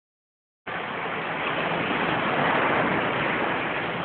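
Beach ambience: a steady rushing noise of wind and surf, starting abruptly about half a second in.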